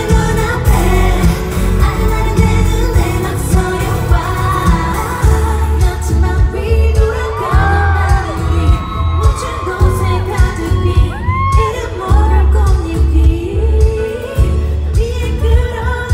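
Live pop concert music: a woman singing over a loud backing track with a heavy, pulsing bass beat, heard through the concert hall's sound system.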